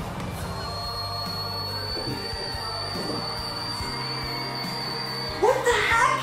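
A male singer holds a single very high whistle-register note, a D8, steady for about five seconds over live concert backing music. A louder voice with sliding pitch cuts in near the end.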